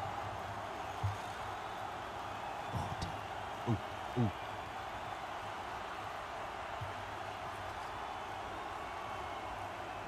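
Steady background hiss of outdoor ambience during a football game. A dull thump comes about a second in, and two short, low vocal sounds follow around four seconds in.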